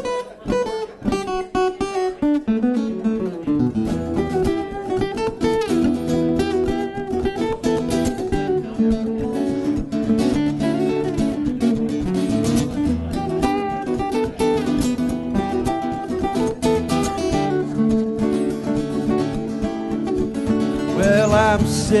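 Two steel-string acoustic guitars playing the instrumental intro of a country song. It opens with a few separate picked notes and fills out into steady strummed chords after about two seconds. A man's singing voice comes in right at the end.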